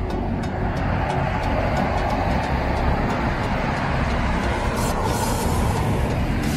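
Street traffic noise: a steady rush of a passing vehicle's tyres and engine that swells about a second in and eases near the end.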